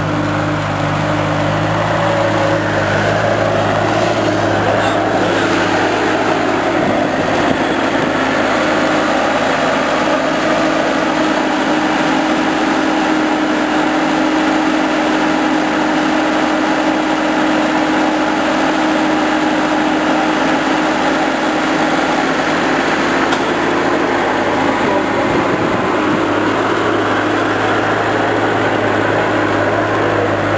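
Compact loader's engine running steadily as it carries a balled-and-burlapped spruce on its forks, its revs rising for a stretch in the middle and settling back near the end.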